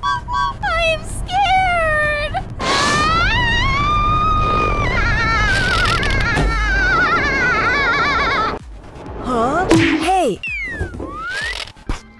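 High-pitched cartoon voices screaming on a roller coaster ride: short yelps at first, then one long wavering scream over a low rumble. Near the end come several sliding pitch sounds that drop and rise.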